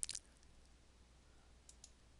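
A quick double click of computer keyboard keys at the very start, then near silence with two faint ticks near the end.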